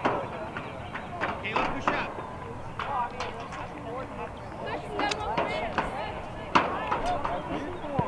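Scattered sideline voices of spectators and coaches talking and calling out over an open field, with a few short sharp knocks, a cluster between one and two seconds in and another near the end.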